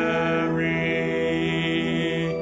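Church organ holding sustained chords, moving to a new chord about half a second in.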